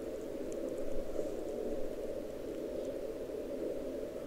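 Elecraft K3 receiver audio on the 40-meter band: steady band-noise hiss through a narrow CW filter, muffled with the highs cut off, and no Morse signal keying, a gap between transmissions.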